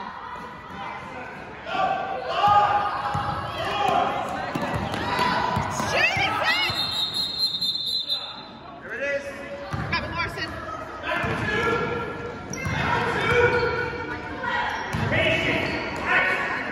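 Basketball bouncing on a gym floor during play, with shouting voices, all echoing in a large gym.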